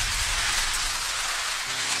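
Hissing, rushing transition sound effect laid under a section title card, fairly even in level and thinning toward the end, with a faint low tone coming in near the end.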